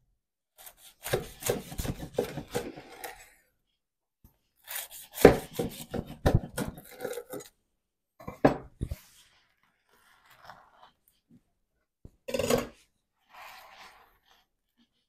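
Chef's knife sawing through a crusty toasted bread roll sandwich on a wooden cutting board: the crust crackles and crunches in several bursts of strokes, with the blade knocking on the board.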